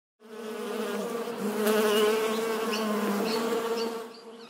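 Bee buzzing sound effect, a steady buzz that wavers slightly in pitch, starting suddenly and fading out near the end.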